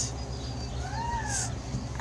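A single brief cat meow about a second in, rising then falling in pitch, over a steady low hum.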